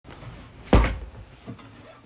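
A sharp knock less than halfway in, followed by a lighter knock, as the phone is moved around while the stream starts.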